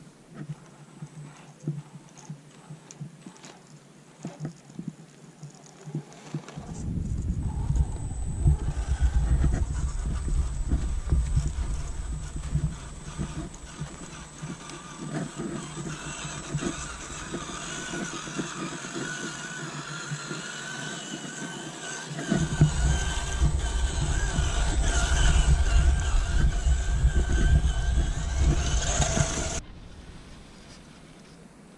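Motor and drivetrain of a radio-controlled Baja Bug off-road car running as it drives over sand, with a whine that wavers in pitch. A low rumble comes in about six seconds in and again about 22 seconds in, and everything cuts off sharply just before the end.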